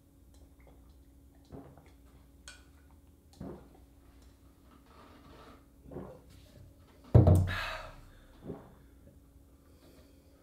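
Two people gulping beer from glasses, with soft swallowing sounds about a second apart. About seven seconds in comes a louder thump with a rush of breath.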